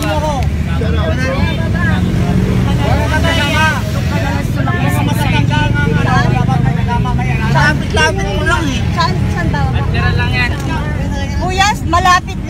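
Several people talking over one another, with the steady low rumble of a jeepney engine underneath, heard from inside the cabin.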